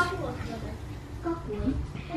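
Faint voices in the background over a low, steady hum, with no clear sound from the pan or spatula.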